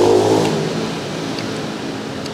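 Street traffic: a motor vehicle passes close by, its engine sound loudest at the start and falling away over the first second, leaving a steady traffic hum.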